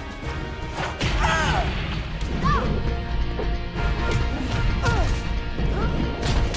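Cartoon fight soundtrack: a dramatic orchestral score under a string of hit and crash sound effects, with short strained cries and grunts from the fighters.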